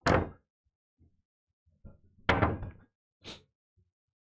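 Pool balls clacking together as they are gathered and set into a triangle rack on the cloth: a sharp clack at the start, another a little past two seconds in, and a lighter one near the end, with soft ticks between.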